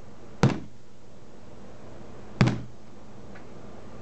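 A hand banging on a tabletop twice, about two seconds apart, each a single sharp knock with a short ring after it.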